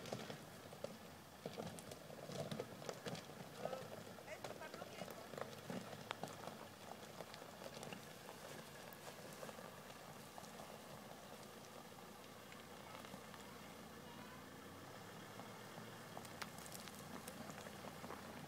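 Faint distant voices, mostly in the first half, over the low, quiet hum of a Volvo XC70 D5's five-cylinder diesel engine as the car creeps across a gravel riverbed.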